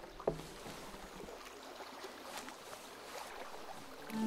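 Faint water-and-wood ambience: quiet lapping water with small scattered creaks and clicks from a wooden boat deck. A single sharp knock on wood comes just after the start.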